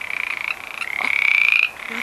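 Pond frogs calling: one pulsed trill after another, each about a second long and rising slightly in pitch, with short breaks between them.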